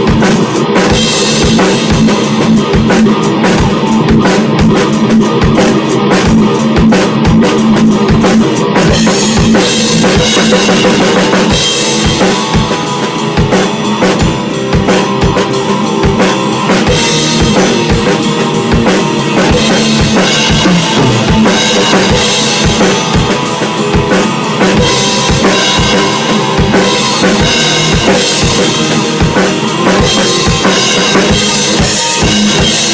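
Heavy metal band playing live in a rehearsal room: a Tama drum kit with rapid, even bass-drum strokes, snare and cymbals, under an electric bass line.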